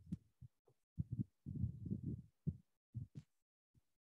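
Muffled low-pitched thumps and rumbles coming through a video-call microphone in short, irregular spurts that cut in and out abruptly.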